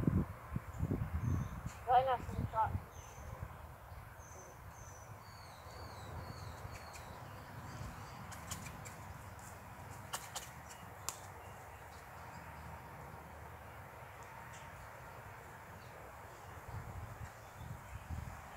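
Quiet outdoor ambience: a small bird chirps in a run of short high notes during the first several seconds, a few sharp ticks come around the middle, and the rest is a low steady hush.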